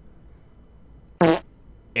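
A single short fart sound effect, one brief pitched blurt about a second in.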